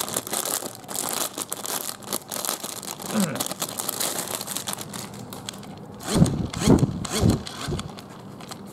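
Clear plastic packaging bag crinkling and rustling as a hand-squeeze toy fan is unwrapped. Near the end come three loud whirrs, rising and falling in pitch, as the fan is squeezed and its blades spin up.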